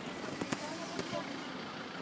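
Faint street background noise with a few sharp clicks, the loudest right at the start and two lighter ones about half a second and a second in.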